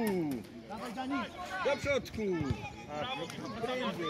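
Shouting on a children's football pitch: short, overlapping calls from the coach and young players, some of them high-pitched.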